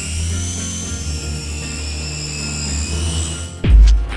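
Background music with a steady low bass. Over it, the Delair UX11 fixed-wing drone's electric motor and propeller whine in several high tones that rise at the start, then hold and sink slightly. Near the end a deep boom hits, the loudest moment.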